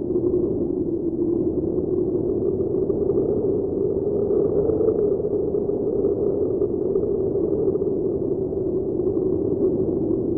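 A steady, muffled droning hum with no beat, no melody and no change in level, the ambient sound effect of a channel intro card.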